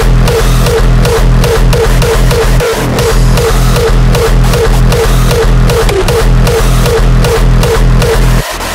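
Raw hardstyle track playing at full loudness: a heavy kick drum on every beat, about two and a half a second, under a repeating synth figure, with no vocals.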